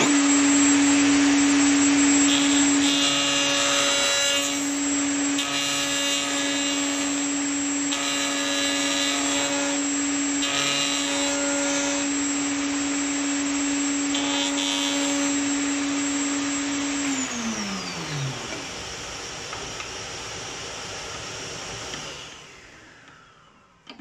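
Triton router in a router table starts and runs at full speed with a steady high whine, and its bearing-guided flush-trim bit cuts a rounded corner in wood by following an aluminium radius template. The cutting noise swells in several short passes. The router is switched off about 17 seconds in and winds down with a falling pitch.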